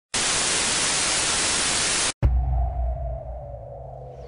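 TV-static sound effect: a loud, even hiss for about two seconds that cuts off suddenly. It is followed by a click and a deep low boom with a faint tone gliding slowly down, fading out, as an intro transition effect.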